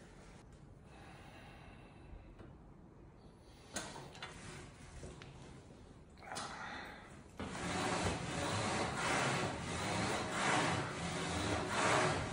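A man breathing hard through a set of Smith-machine bench press reps with a 100 kg bar: quiet at first with a single sharp clack about four seconds in, then loud, forceful breaths from about seven seconds in, swelling roughly once a second with each rep.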